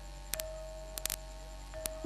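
Low steady electrical mains hum from a public-address sound system, with a few faint clicks scattered through it.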